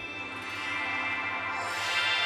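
Cartoon musical sound effect for a rolling hover die: a sustained chord that slowly swells, with a bright high shimmer building near the end.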